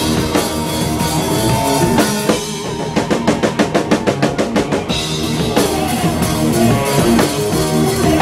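Live rock band playing: a drum kit with cymbals, bass guitar and electric guitar. About three seconds in, the drums break into a run of fast, evenly spaced strokes, about six a second, for nearly two seconds before the full band comes back in.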